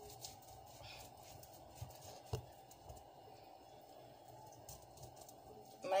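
Knife cutting into a still-frozen maasbanker (Cape horse mackerel): faint scraping with a few small clicks, the sharpest about two and a half seconds in. The fish has not been defrosted, so it cuts harder.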